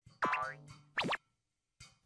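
Cartoon sound effects: a springy boing with a falling pitch about a quarter second in, then a quick swoop up and back down about a second in.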